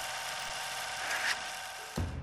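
A thin, buzzy programme transition jingle under the show's title card, with a brighter swish about a second in. It cuts off sharply at the end.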